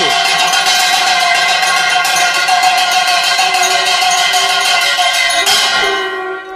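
A metal hand bell rung rapidly and continuously, with a dense steady ringing that cuts in suddenly and fades out near the end.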